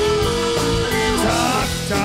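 A rock band playing live in a stretch without singing: guitar to the fore over bass and drums, with notes gliding in pitch in the second half.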